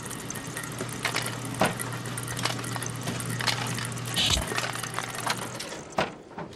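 Lottery ball machine's blower running with a steady low hum while ping-pong balls click and rattle inside its clear box. There is a low thump about four seconds in, and the hum cuts off shortly before the end.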